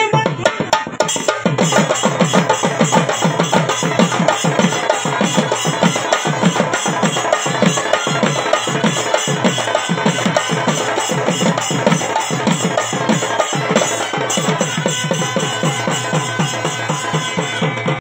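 A group of shoulder-slung barrel drums played together in a fast, steady rhythm of low beats that dip in pitch. The drumming picks up about a second in.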